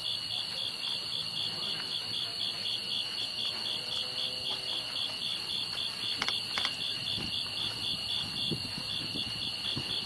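Night insect chorus: a steady high trill with a second call pulsing a few times a second over it.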